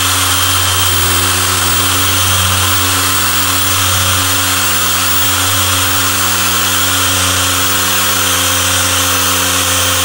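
Dual-action polisher running steadily with an orange pad buffing scratch-remover compound into car paint: a continuous, even motor hum with no change in speed.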